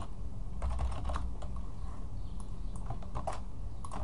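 Computer keyboard keys being typed in short, irregular bursts of clicks.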